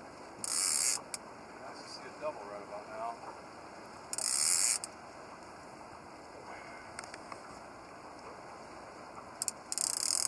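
Drag of a conventional casting reel buzzing in three short bursts, about half a second in, about four seconds in and near the end, as a hooked catfish pulls line off against the bent rod.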